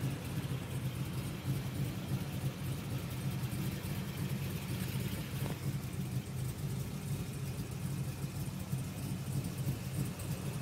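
Holden Commodore SS wagon's V8 engine idling steadily, heard from inside the cabin, with one faint click about halfway through.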